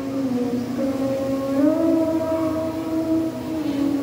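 Voices singing a slow hymn in long held notes, the melody stepping up about a second and a half in and back down near the end.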